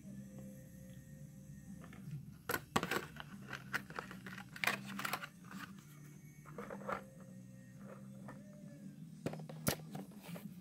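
Blister-carded diecast toy cars handled and set in place: scattered plastic clicks, taps and crinkles of the packaging, loudest a few seconds in and again near the end, over a steady low hum.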